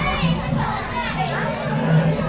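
Overlapping chatter of children and adults, with no single voice standing out.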